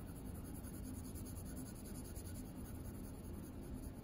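2B graphite pencil shading on paper, a soft steady scratching as a square of a value scale is filled in, over a faint steady hum.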